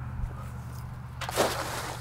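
A weighted cast net landing on the water with one short splash about a second and a half in, over a low steady background hum.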